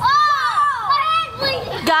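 Children's voices crying out, a long high-pitched exclamation that rises and falls in the first half second, then more short calls near the end.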